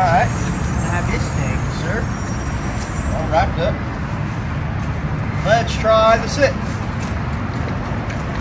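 Steady low rumble of road traffic. A few short voice sounds come over it, the clearest group about five and a half to six and a half seconds in.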